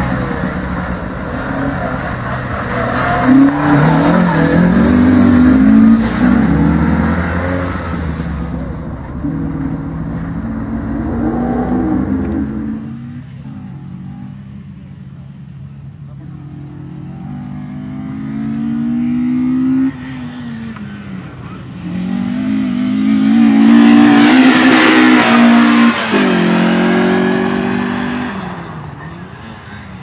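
Peugeot 106 Rallye's four-cylinder petrol engine revving hard as the car is driven through a cone slalom. The pitch climbs and drops again and again with each shift and lift. It is loudest at the start, fades as the car moves away, and is loud again past the two-thirds mark as it comes back near.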